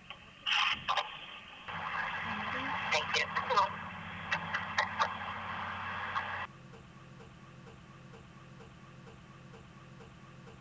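Indistinct, muffled voice over crackly hiss with scattered clicks, all cutting off sharply about six and a half seconds in and leaving only a faint low hum.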